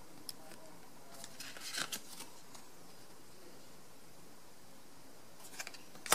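Small paper photo cards being handled and set down on a wooden table: faint rustles and light clicks of card, busiest about two seconds in and again near the end.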